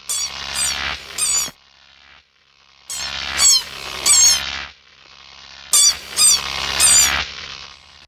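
A squeaky toy squeezed in three bursts of a few high, wavering squeaks each, with a pause of about a second between bursts.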